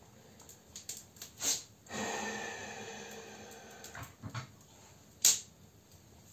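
A dog whining once, a long whine starting about two seconds in and fading out over about two seconds, with a few small clicks and a short sharp noise near the end.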